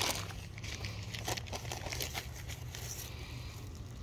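Thin clear plastic bag crinkling softly as a hand rummages inside it and draws out a dahlia tuber packed in peat.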